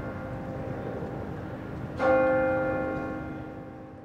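A bell-like chime in a closing logo sting. One strike rings on from before, a second strike comes about two seconds in, and each decays slowly away over a low rumble.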